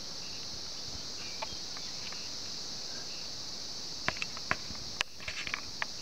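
Steady high-pitched insect chorus, with a few short sharp clicks in the last two seconds.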